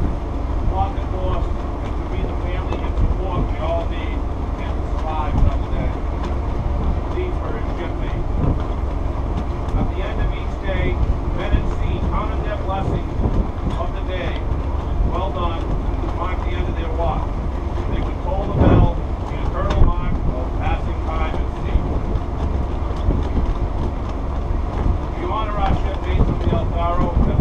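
A man's voice speaking, indistinct, over steady wind rumble on the microphone.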